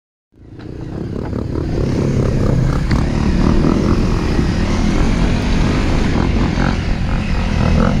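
Four-stroke single-cylinder dirt bike engine running as the bike climbs a narrow, rutted dirt track, fading in over the first second or two and then holding steady.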